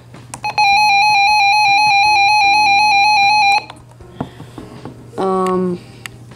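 Radio Shack 12261 weather radio sounding its alert: one steady electronic tone, held about three seconds, then cutting off suddenly.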